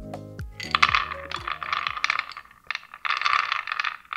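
Whole hazelnuts poured from a small glass cup onto a wooden cutting board, clattering and rolling in two rushes of many small clicks. Background music fades out at the start.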